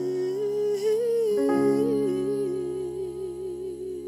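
A male voice holds a long wordless note with vibrato over sustained piano chords from a Yamaha keyboard, with a chord change about a second and a half in, easing off toward the end.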